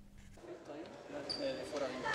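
Faint court ambience in a basketball sports hall: low murmur of players' voices, with a brief high-pitched squeak about a second and a half in.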